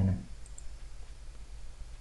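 A couple of faint computer mouse clicks, about half a second in, over a low steady hum.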